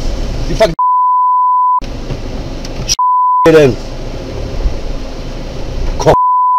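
A steady, single-pitched censor bleep, about a second long near the start and again briefly about three seconds in, cutting out the speech it covers. Between the bleeps, car cabin rumble and a man's voice.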